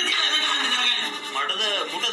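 A man shouting in a strained voice that wavers and falls in pitch in the second half, close to a whinny.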